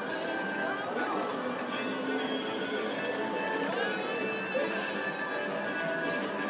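Happy Lantern Lightning Link slot machine playing its bonus-round music with chiming coin effects as the free-game win counts up. Casino voices can be heard underneath.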